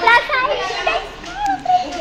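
Children's voices chattering, several young voices talking, with a short lull in the middle.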